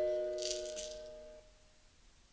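The last struck notes of two berimbaus ring on and fade away, dying out in about a second and a half. About half a second in there is a brief shake of a caxixi basket rattle.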